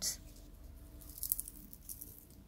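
Faint crackling of a charred, crispy roasted Brussels sprout being crushed between the fingers, with a short cluster of crackles a little over a second in.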